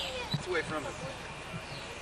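Faint voices of small children talking in the first second, with a single dull thump about a third of a second in.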